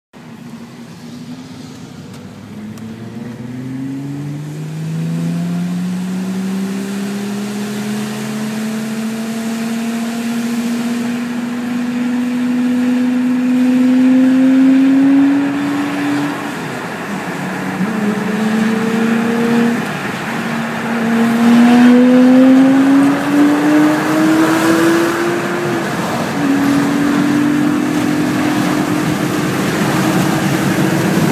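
Car engine accelerating hard, heard from inside a car's cabin: the pitch climbs slowly through one long pull, then drops and climbs again at several gear changes, over tyre and road noise on a wet motorway.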